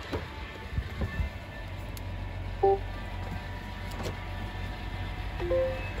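Two short electronic chimes from a Mazda CX-90, each a quick two-note tone, about three seconds apart, over a low steady hum and a few light clicks as the car is unlocked.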